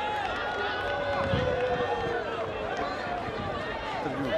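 Football stadium crowd: many voices shouting and chanting at once, with a few long held notes in the mix.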